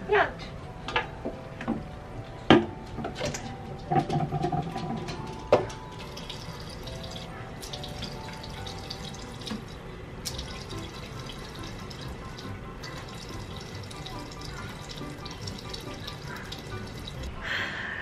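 Water running from a bathroom sink tap under background music, after a few sharp clicks and knocks in the first seconds.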